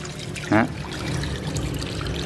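Fish-tank water draining out of a siphon hose and pouring steadily into a mesh net.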